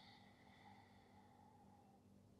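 Near silence: room tone, with a faint breath trailing off in the first second or so.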